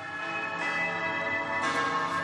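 Film-score music from an animated short: a held chord with bell-like tones, swelling near the end.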